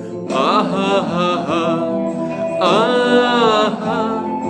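A man singing a Hindi song: a long held "aa" after a short break at the start, then a new "aha-ha" vocal run beginning about two and a half seconds in.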